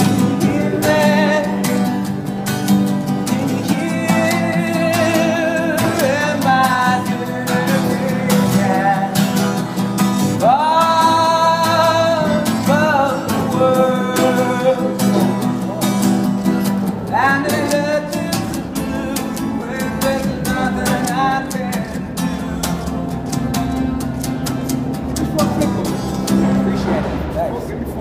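A man singing while strumming a steel-string acoustic guitar, his voice held in long, wavering notes over a steady strum. The strumming thins out near the end as the song finishes.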